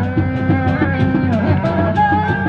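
Live Sundanese reak ensemble music: a high, wavering tarompet melody over steady drumming.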